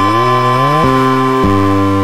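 Live psychedelic band music: a rich-toned lead instrument glides up in pitch near the start, then steps between held notes, over a steady high drone.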